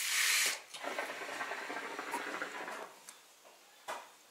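Hookah being drawn on through its hose: a short, loud hiss, then about two seconds of steady bubbling hiss as smoke is pulled through the water, fading out about three seconds in.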